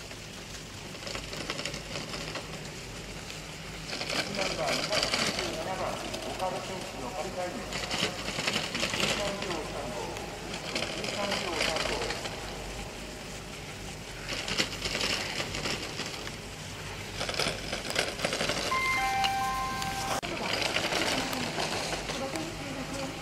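Ski edges carving on hard-packed snow through giant slalom turns: a scraping hiss that swells and fades with each turn, about every two to three seconds. Voices murmur in the background, and a few short beeps sound near the end.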